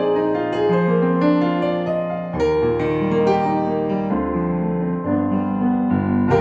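Roland FP-30X digital piano playing its acoustic grand piano voice: slow chords with a moving bass, a new chord struck about every one to two seconds and the notes left ringing into each other.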